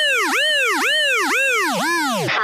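Siren-like sound effect: a pitched tone that rises and falls in quick arches, about two a second, the last few sinking lower.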